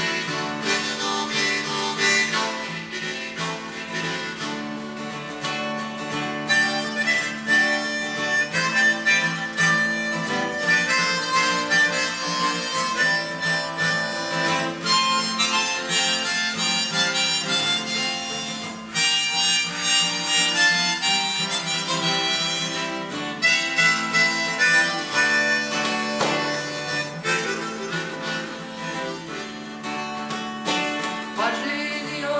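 Harmonica in a neck rack playing a solo melody over a strummed acoustic guitar: the song's instrumental break, with no singing.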